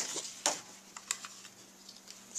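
A few short clicks and taps from card stock and a paper-craft tool being handled, the clearest about half a second in, over a faint steady hum.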